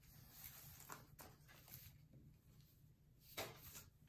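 Near silence: room tone with a few faint clicks, then a soft rustle near the end as an arm slides across a cloth tablecloth.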